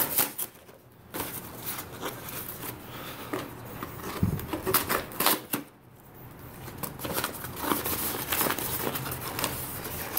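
Paper mailer torn open by pulling its tear strip, with a loud rip at the start, followed by irregular crinkling and rustling of the stiff paper as it is opened by hand.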